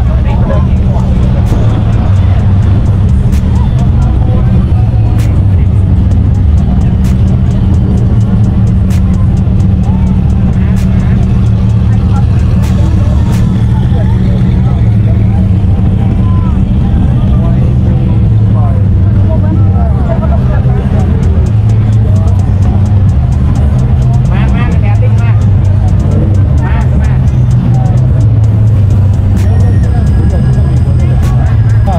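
Sports car engines idling and creeping past at low speed with a steady deep rumble, over a crowd talking.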